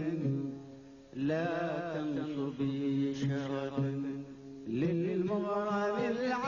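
A male voice singing a slow, unmetred Arabic mawwal in long held notes with wavering, ornamented pitch. One phrase fades out in the first second, a new phrase starts about a second in and holds until nearly five seconds, and another begins just after.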